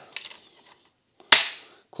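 A few faint clicks, then one sharp metallic snap a little over a second in: the toolless jam-release latch on the nose of a Ryobi 18-gauge brad nailer being snapped shut, with the battery out.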